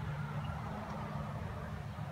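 A low, steady hum with no speech.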